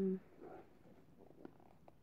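A woman's voice ends a drawn-out word right at the start. Then it is quiet apart from faint soft handling sounds and a couple of small clicks as a paperback book is picked up and raised.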